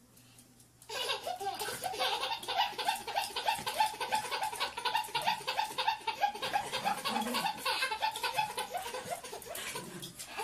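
A baby belly-laughing, a long unbroken run of quick high-pitched bursts that starts about a second in.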